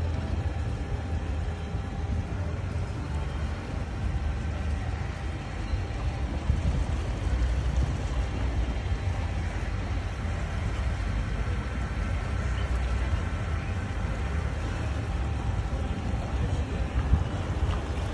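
Steady low rumble of a small wooden abra boat under way along a canal, its motor running, with wind on the microphone.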